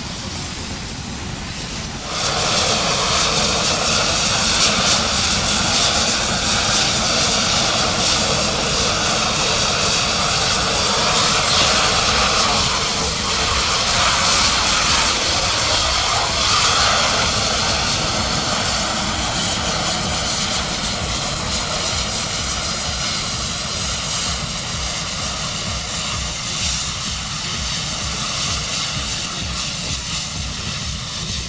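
Ignited pressurised hydrocarbon release from a pipe burning as a jet fire: a loud, steady rushing noise. It grows louder about two seconds in and eases a little toward the end.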